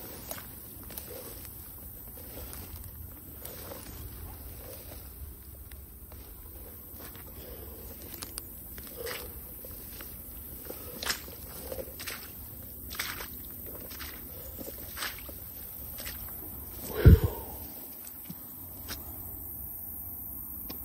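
Footsteps of a person walking through tall grass and brush at a steady pace, with the rustle of stems against legs. About seventeen seconds in there is one short, louder low thud.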